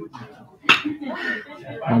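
A baseball bat hitting a pitched ball: one sharp crack about two-thirds of a second in, with people talking around it.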